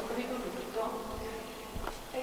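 A faint, drawn-out voice through a microphone and loudspeaker, with a steady hum, and a sharp click shortly before the end.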